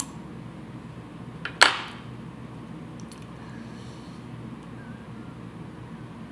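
Fly-tying scissors snipping the wire tag end at the hook of a brassie fly: a small click, then one sharp snip about a second and a half in, over a steady low hum.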